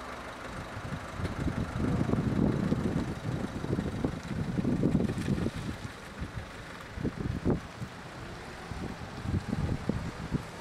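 Small hatchback car pulling away from the kerb and driving off, its engine low and faint under gusts of wind buffeting the microphone.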